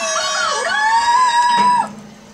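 Cartoon soundtrack playing from a television: a pitched musical sound that dips, then rises to one long held note that cuts off near the end.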